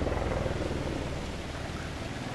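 Helicopter's low rotor beat, a steady rumble that slowly fades.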